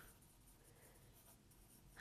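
Faint scratching of a pen writing words on paper, barely above room tone.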